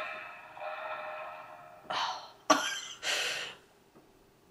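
The tail of a pop song fades out, followed by three short breathy, cough-like bursts from a person about two, two and a half and three seconds in; the second starts with a sharp click.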